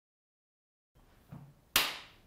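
Silence, then a faint low murmur and a single sharp hit near the end that fades out over about half a second.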